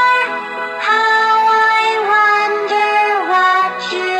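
Music: a children's nursery-rhyme song, a sung voice holding long notes of about a second each, with a brief pause about half a second in.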